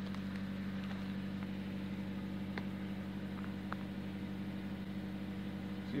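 An engine idling steadily, a constant low hum, with a few faint light ticks over it.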